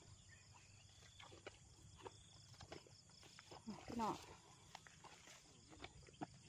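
Faint, scattered rustles and soft ticks of footsteps through tall grass, with one short spoken word about four seconds in.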